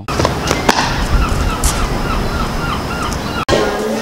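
Gulls crying repeatedly over a steady rushing noise, the stock effect behind a cartoon "5 Hours Later" time card. It cuts off abruptly about three and a half seconds in.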